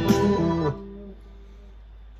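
Electric guitar played through an amp, the last notes of an improvised phrase plucked and ringing, then cut off sharply under a second in. One note fades out briefly, leaving a low steady hum.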